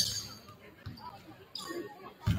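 A basketball bouncing a couple of times on a hardwood gym floor, with a few scattered thuds, and faint voices echoing in the large hall.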